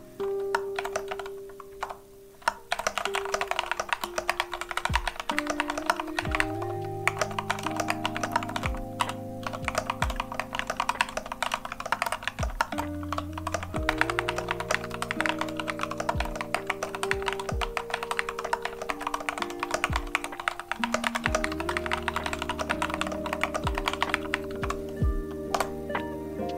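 Typing on a transparent Lofree 1% mechanical keyboard with Kailh Jellyfish switches: a few scattered keystrokes, then steady fast typing from about three seconds in. Background music plays underneath.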